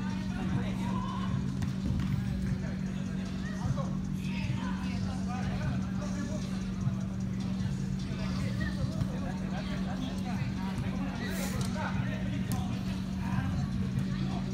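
Indoor soccer game: players' voices and shouts across the hall, with a few sharp thuds of the ball being kicked, over a steady low hum.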